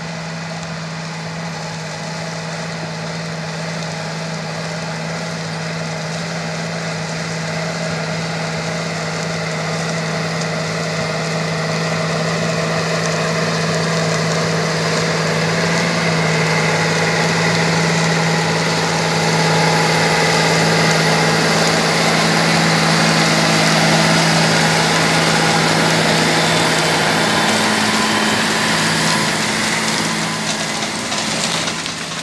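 Large farm tractor's diesel engine running steadily under load as it pulls a disc harrow through the field, its low engine note growing louder as the tractor approaches.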